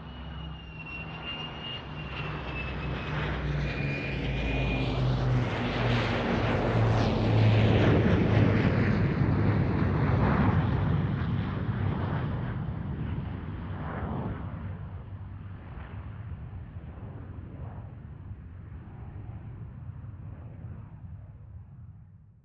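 Formation flypast of an Avro Lancaster with a Tornado GR4 and an F-35 Lightning: the mixed drone of the Lancaster's four piston engines and the jets' engines. It builds to a peak about seven to ten seconds in as the formation passes, then fades away. A thin high whine slides slowly downward in the first few seconds.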